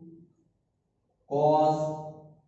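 A man's voice: a word trailing off, about a second of silence, then one drawn-out syllable held on a steady pitch.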